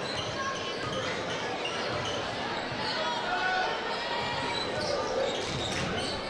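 Basketball being dribbled on a hardwood gym floor during play, over a steady murmur of crowd voices in the gymnasium.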